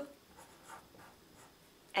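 Felt-tip marker drawing on paper: faint, short scratching strokes of the tip across the sheet.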